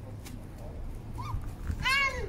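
A toddler's high-pitched squeal near the end, after a smaller squeak about a second in, over a steady low background rumble.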